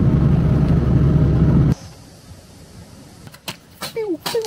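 Camper van driving at road speed, its engine and tyre noise loud and steady inside the cab, cutting off suddenly under two seconds in. Afterwards only a quiet outdoor background with a few light clicks.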